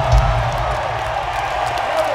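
Live rock band holding a low sustained note that slowly fades, with a higher tone held above it, over a cheering, clapping arena crowd.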